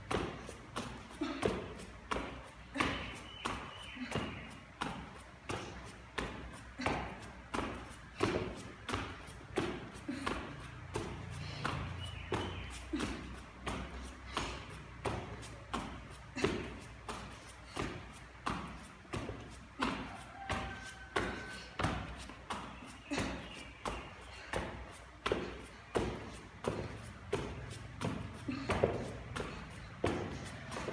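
Bare feet thudding in quick, steady rhythm on an exercise mat during fast mountain climbers, about one and a half landings a second.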